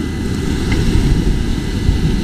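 Wind buffeting the microphone, a steady low rumble, with surf breaking on the beach behind it.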